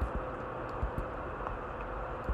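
Faint, sparse computer keyboard key clicks over a low steady background hum.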